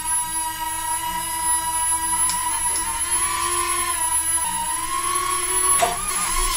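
Electric motors of a tiny remote-control flying toy whining in flight: a steady high hum with overtones that wavers slightly in pitch as it is steered.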